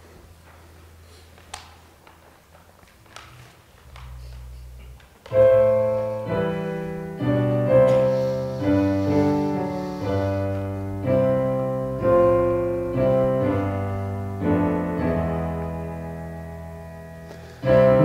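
Piano playing the introduction to a hymn verse: a series of chords, each struck and dying away, roughly one a second. The playing starts after about five seconds of quiet room sound with a few faint clicks.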